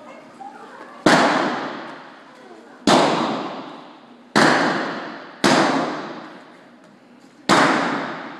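Five gunshots from single-action revolvers loaded with blanks, fired at uneven intervals a second or two apart. Each shot rings on with about a second of echo in the enclosed arena.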